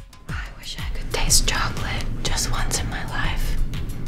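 A woman whispering in short, breathy bursts over background music with a steady low beat.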